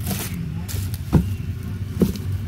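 Plastic packaging being handled: short crinkles and a sharp thump about a second in, as bagged t-shirts are moved and set down, over a steady low hum.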